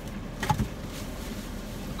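Steady low hum inside a car cabin, with one short knock about half a second in.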